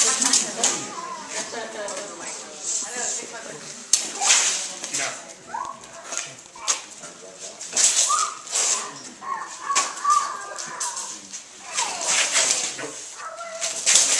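Steel rapier blades clicking and clashing in sharp, irregular strikes that come in scattered clusters as two fencers engage. Low voices from onlookers run underneath.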